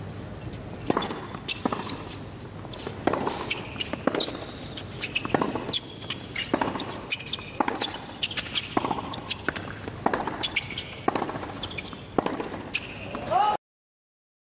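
Tennis serve and rally on a hard court: sharp racket strikes on the ball about once a second, with ball bounces in between. The sound cuts off suddenly near the end.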